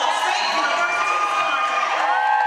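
Women's volleyball team shouting and cheering together in a huddle, many high voices overlapping.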